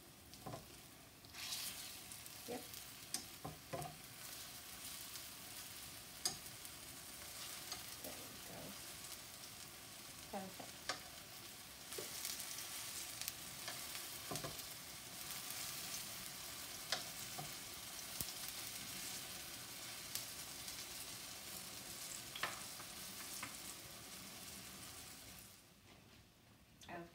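Banana fritters sizzling in hot oil in a nonstick frying pan, a steady hiss with scattered light clicks of metal tongs against the pan as the fritters are turned.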